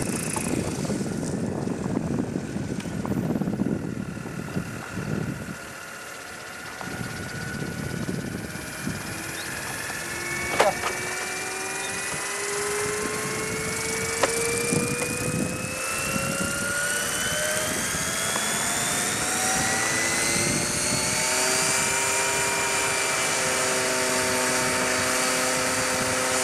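Electric RC helicopter's motor and drivetrain whining, the pitch rising steadily as the main rotor spools up on the ground, then holding steady near the end. Two sharp clicks stand out partway through.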